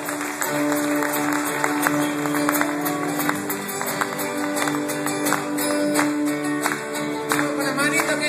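A live Latin American folk group playing acoustic guitars with percussion, strummed and plucked chords over a long held low note that runs through most of the passage.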